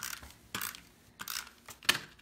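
Hand-held adhesive tape runner drawn across paper in a few short ratcheting strokes, with a sharp click near the end.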